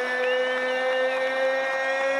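Ring announcer's voice holding one long, drawn-out note on the end of the winner's nickname 'Triple G', with the crowd cheering underneath.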